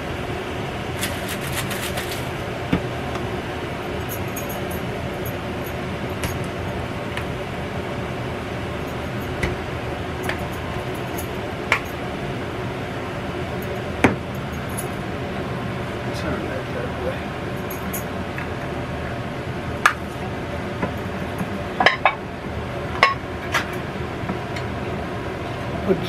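A room air conditioner running with a steady hum, and over it a scattering of short metal clinks and knocks as cans are handled and set down on a countertop, the sharpest about halfway through and a cluster near the end.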